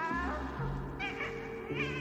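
Shrill creature cries from the film's gargoyle monsters: three short calls that bend in pitch, at the start, about a second in and near the end. They sound over a sustained, low, eerie musical score.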